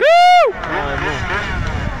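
A short, loud shout from a spectator, its pitch rising then falling, lasting about half a second at the start; after it, people talk over the background noise of the race.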